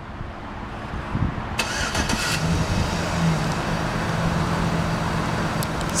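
A 2008 Chevrolet Silverado's engine is remote-started: the starter cranks briefly about a second and a half in, then the engine catches and settles into a steady idle.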